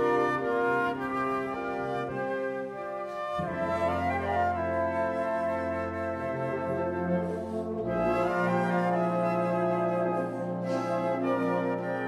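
A concert wind band plays sustained full chords with the brass to the fore. The harmony and bass line change about three seconds in and again about eight seconds in.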